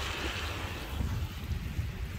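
Wind buffeting the microphone of a camera riding on a moving e-bike: a steady, uneven low rumble with a faint hiss of tyres on a wet road.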